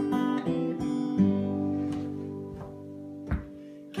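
Two acoustic guitars playing the opening chords of a song, picked and strummed notes ringing on. The chords die away over the last second or so, broken by one more strum shortly before the end.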